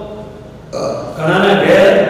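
A man's voice speaking after a short pause of under a second.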